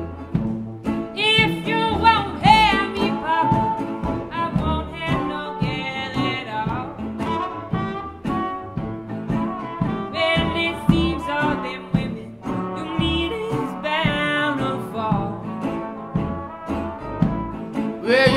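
Traditional New Orleans-style jazz band playing an instrumental break: bending horn lines over a tuba bass and strummed banjo and guitar rhythm.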